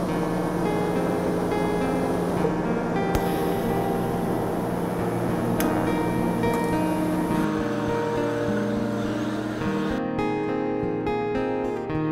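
Background music with plucked acoustic guitar, over a steady hiss that cuts out about ten seconds in.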